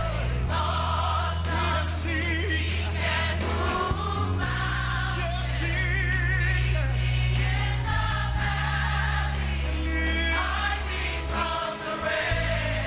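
Live gospel music: a choir singing with a band, over long held bass notes that change every few seconds.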